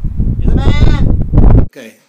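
Wind buffeting the microphone in loud, heavy rumbles, with a wavering, voice-like call rising and falling in pitch about halfway through. It all cuts off abruptly near the end.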